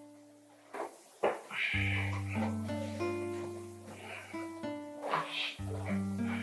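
Background film-score music: sustained notes that step to new pitches every second or so, getting fuller about two seconds in. A couple of short soft noises come about a second in.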